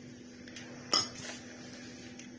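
A single sharp clink of a spoon about a second in, as a spoonful of mushroom-and-cheese filling is laid onto a square of ravioli dough, followed by a brief scrape.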